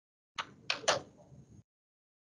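Three sharp knocks in quick succession, the last two the loudest, over faint room noise.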